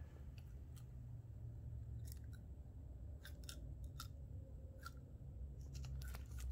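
Faint, sparse sharp clicks and taps as a monitor lizard mouths a whole quail egg in a plastic tub, over a low steady hum.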